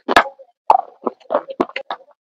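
Close-miked eating sounds: a run of short, sharp crunches and mouth clicks, about four a second, as pieces of a crumbly white block are bitten and chewed.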